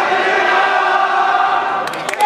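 Many voices of supporters calling out together in long, drawn-out, chant-like shouts of encouragement from around a judo mat; sharp clapping starts right at the end.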